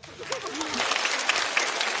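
Studio audience applauding: a dense, steady patter of many hands clapping that starts at once as the comedian finishes introducing herself.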